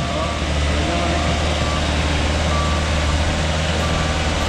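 Haulotte articulating boom lift running as it drives on a gravel mound: a steady low machine drone, with faint beeps of its travel alarm.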